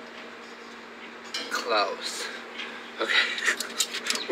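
Metal grill tongs clicking and clinking several times near the end, with brief wordless voice sounds before them.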